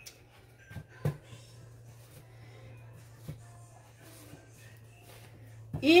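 Soft handling sounds of hot masa picaditas being pinched and set down on paper towel: a few light taps and rustles over a steady low hum.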